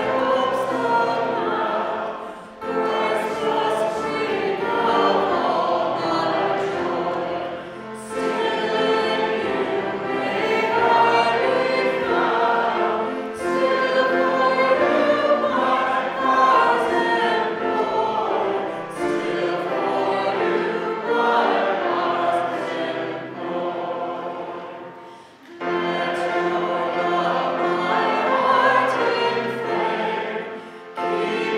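A church congregation singing a hymn together, in phrases with short breaks between them about every five to six seconds.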